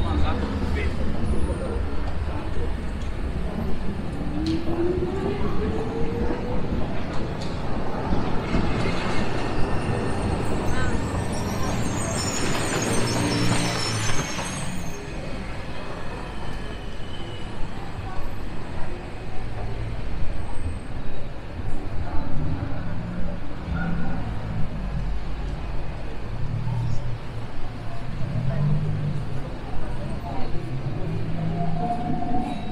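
Busy city street ambience: chatter of passers-by and footsteps on a pedestrian pavement, with traffic and a tram running alongside. The traffic noise swells loudest about nine to fifteen seconds in, and a short rising tone comes about four seconds in.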